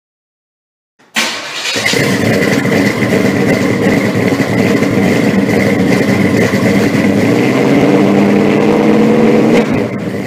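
A car engine fires up abruptly about a second in and runs loud and steady, its pitch creeping up slightly near the end. It drops away right at the close.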